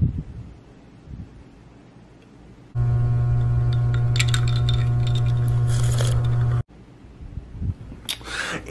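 A steady low hum with a stack of overtones, cut in abruptly about three seconds in and cut off just as abruptly about a second and a half before the end, with faint clinks over it. Before it, only faint low rustling.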